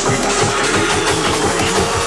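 Jungle drum and bass music from a live DJ mix: fast, dense breakbeat drum hits over a deep bass line.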